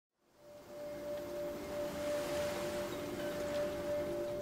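Logo intro sound: a single held ringing tone with a few softer lower tones beneath it and an airy hiss that swells in, fading up from silence just under half a second in.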